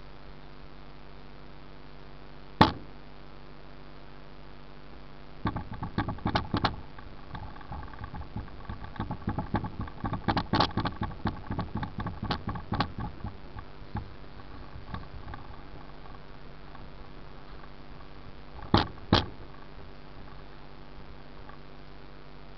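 Cloth hand-buffing rubbing compound into car paint: quick back-and-forth rubbing strokes for several seconds starting about five seconds in. A sharp knock comes a couple of seconds in and two more near the end.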